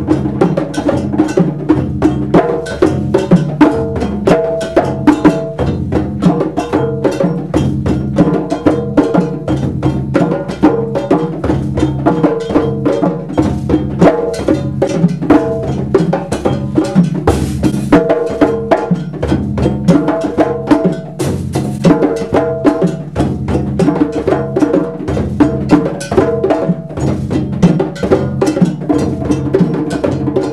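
Ensemble of djembes played by hand in a fast, continuous interlocking rhythm, dense with strikes and no pauses.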